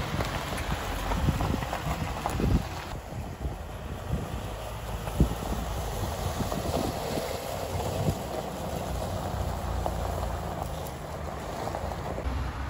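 Nissan Navara 2.5 dCi four-cylinder turbodiesel pickup driving slowly past, engine running steadily, with tyres crunching over gravel in scattered clicks.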